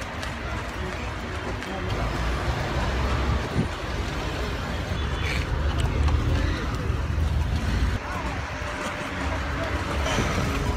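Street traffic noise heard from a moving open vehicle, with a steady low wind rumble on the phone microphone and voices in the background.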